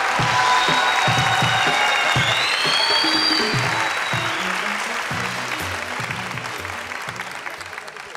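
Studio audience applauding over the show's background music, which has a steady low beat. The applause and music fade away near the end.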